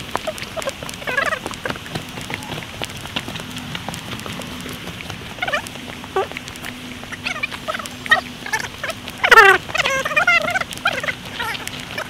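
Footsteps on a dirt-and-stone forest trail, with people's voices calling out now and then. The loudest is a falling cry about nine seconds in, followed by a wavering, warbling call.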